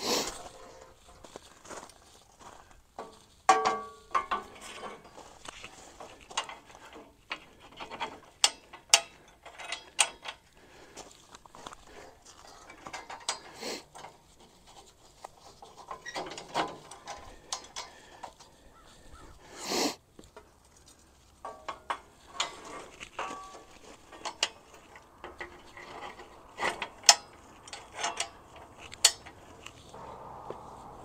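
Steel scaffolding cross braces being hooked onto the frame pins: an irregular string of sharp metal clanks, clicks and rattles, with a brief metallic ring a few seconds in and again past the middle.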